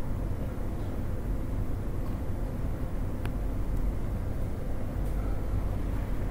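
Steady low background rumble with a faint hum, broken by one sharp click about three seconds in.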